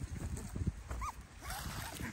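A five-week-old schnoodle puppy gives one short, high whine about a second in.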